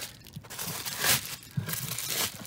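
Plastic bubble wrap being gripped and moved by hand, crinkling in a few irregular bursts, the loudest about a second in.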